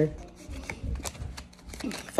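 A deck of tarot cards shuffled by hand: soft, uneven rustling with scattered light clicks of the cards.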